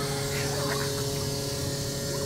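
Steady electric hum of an ice cream vending machine's mechanism as its arm lifts a cup up out of the freezer.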